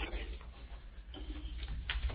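Steady low hum and faint hiss of a telephone conference line, with a single faint click near the end.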